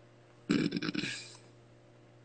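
A brief, rough, throaty sound from a person's voice, about a second long, starting about half a second in and fading out.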